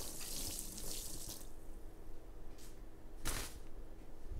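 Water poured from a drinking glass, splashing onto a parrot's feathers and the towel beneath. The pour stops about a second and a half in, and two brief noises follow later.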